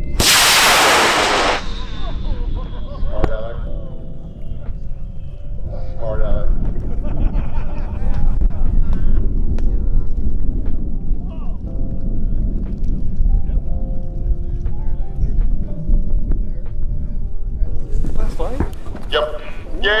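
High-power model rocket on a J615 motor lifting off: the motor's burn is a loud roar for about a second and a half, followed by a faint tone that slowly falls in pitch as the rocket climbs away, with a steady low rumble of wind underneath.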